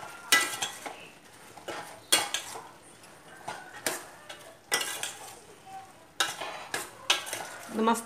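Steel ladle stirring kidney beans in a stainless-steel pot, scraping and clinking against the metal sides in about a dozen irregular strokes, over a faint sizzle from the hot pot.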